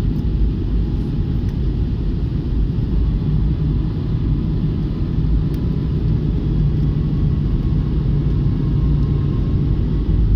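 Jet airliner cabin noise at a window seat in flight: a steady low roar of engines and airflow, with a low hum standing out over it from about three seconds in until just before the end.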